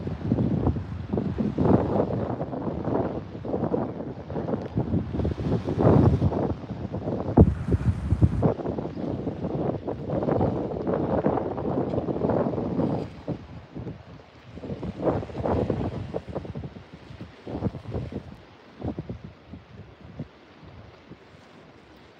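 Wind buffeting the phone's microphone in irregular gusts, heavy through the first half and easing off after about thirteen seconds, with only occasional gusts later.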